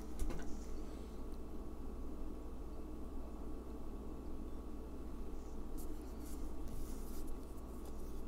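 Faint handling noise of fingers threading small beads onto beading wire: light rustles and a few soft ticks, mostly in the second half, over a steady low room hum.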